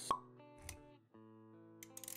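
Animated-logo intro music of held electronic notes, with a sharp pop just after the start and a short low thud a little over half a second in; the music drops out briefly and comes back about a second in.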